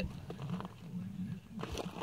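Low, uneven background rumble with a few faint soft knocks, like a rifle being settled on a rest. No shot is fired.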